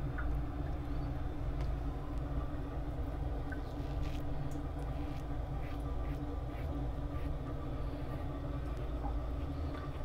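A safety razor scraping lathered stubble in a few short, faint strokes, over a steady low hum in the room.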